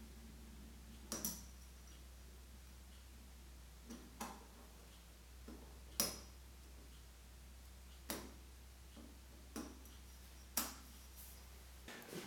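Light metallic clicks and ticks of a single compression ring being worked by hand onto a coated flat-top two-stroke piston, about nine in all at uneven intervals, the sharpest about six seconds in.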